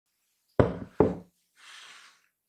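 A ceramic oven dish set down on a wooden table top: two solid knocks less than half a second apart, then a soft rustle.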